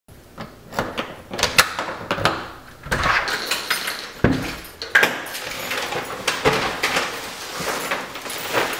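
Keys jangling and clicking in a front-door lock, then the door unlatched and pushed open with a knock about four seconds in, followed by the rustle of shopping bags as someone comes through.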